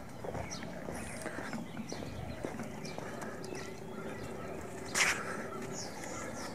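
Footsteps walking on a concrete sidewalk, with a sharp click about five seconds in.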